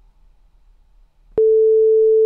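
Near silence, then about a second and a half in a click and a single steady mid-pitched beep that holds. This is the signal tone of an exam listening recording, marking the start of the repeated playback.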